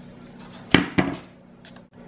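Scissors snipping through the binding thread's tail: two short sharp clicks about a quarter second apart.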